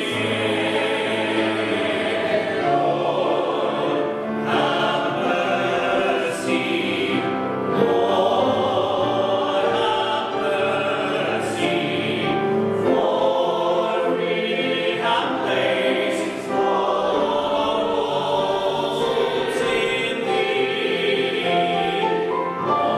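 Mixed church choir of men's and women's voices singing together in parts, at a steady loudness throughout.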